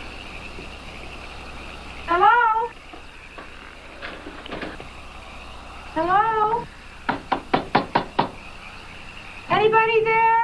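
A quick run of about eight sharp knocks on a pane of glass. Three loud calls, each rising in pitch and about half a second long, come about two seconds in, six seconds in, and again just before the end.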